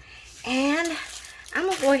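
A woman's voice: one drawn-out word about half a second in, then talking resumes near the end.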